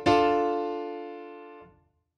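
Yamaha Montage 6 synthesizer playing a CFX grand piano preset: one chord struck loudly at the start and held, ringing and slowly fading for about a second and a half before it is released and stops.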